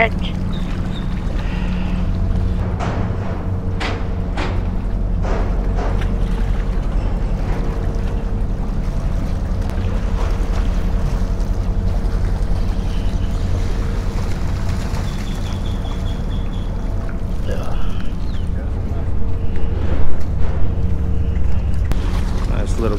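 Steady, constant-pitched drone of an engine or machinery running nearby, with a few sharp clicks in the first several seconds and louder handling knocks shortly before the end.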